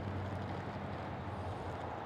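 Low, steady hum of a motor vehicle engine over general street noise, the hum fading away about one and a half seconds in.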